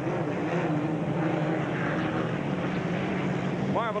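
Unlimited hydroplane racing flat out, its Rolls-Royce Merlin V12 piston aircraft engine giving a loud, steady drone.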